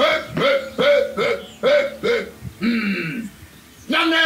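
A man's voice shouting a rapid string of short, sharp wordless calls, about six in a row at two to three a second, each rising and falling in pitch. A lower, longer falling call follows about three seconds in.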